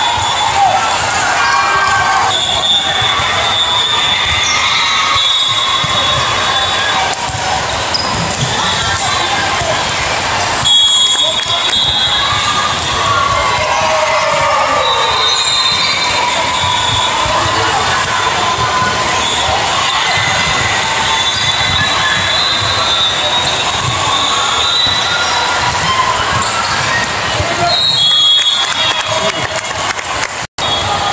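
Busy multi-court gymnasium during volleyball play: a steady din of many voices, with volleyballs being struck and bouncing on the hardwood floor. There are sharper, louder hits about eleven seconds in and again near the end.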